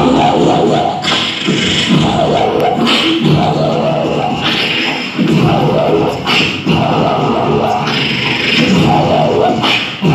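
A group of beatboxers performing together through microphones and a PA in a large hall: a steady, repeating vocal beat of kick- and snare-like mouth sounds layered with voiced bass and melody lines.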